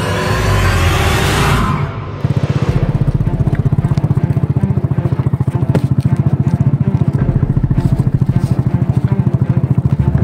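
A rising swell of added effect or music fades out about two seconds in. Then a small motorcycle engine runs steadily with a fast, even beat.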